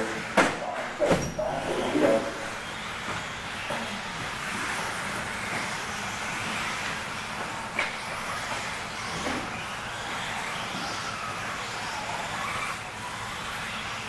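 Electric 2WD RC buggies with 17.5-turn brushless motors racing on an indoor dirt track, a steady hiss of motors and tyres, with two sharp knocks about half a second and a second in.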